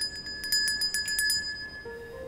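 A small metal handbell shaken rapidly, its clapper striking about eight times a second over a high, steady ring. The shaking stops about one and a half seconds in and the ring fades away.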